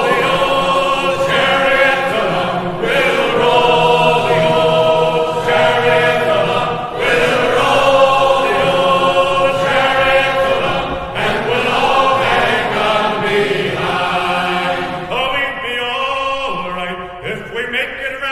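A sea shanty sung by a choir of voices in harmony, held notes and phrases following one another without a break.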